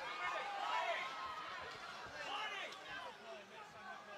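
Speech: people's voices talking and calling out, with no other distinct sound standing out.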